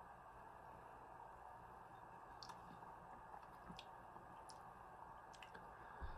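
Near silence: faint room tone with a few faint, scattered clicks.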